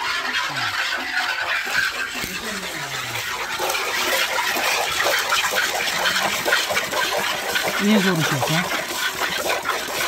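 Milk squirting from a cow's teats into a galvanized metal bucket during hand milking: two alternating streams hitting the milk already in the pail make a continuous fizzing spray.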